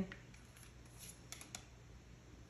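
Quiet room with a few faint, sharp clicks about a second and a half in, from a deck of tarot cards being picked up and handled.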